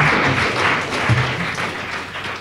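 Audience applauding, the clapping gradually fading away.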